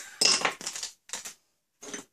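Metal hand tools clinking and clattering as they are handled and set down on a wooden board: a loud clatter about a quarter second in, then a few lighter clinks.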